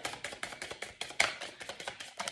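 A deck of reading cards being shuffled overhand, hand to hand: a quick, even run of card flicks and slaps, about ten a second.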